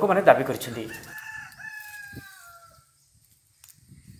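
A rooster crowing once: one long call that falls slightly in pitch and fades out before three seconds in, after a voice finishes speaking in the first second.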